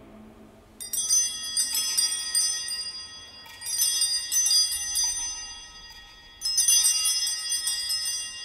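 Altar (sanctus) bells, a cluster of small bells, rung by the kneeling server in three separate peals a few seconds apart, each jangling and then fading. They mark the elevation of the host just after the words of consecration.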